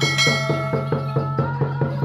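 A bright bell chime starts at once and fades over about a second and a half: the notification-bell sound effect of an on-screen subscribe-button animation. It sits over music with a fast, steady beat.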